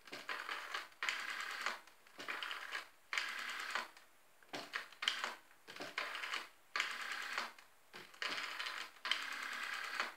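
Black desk telephone's rotary dial being dialed digit after digit: each digit is a short burst of the dial winding round and whirring back with rapid clicks, about once a second with brief pauses between.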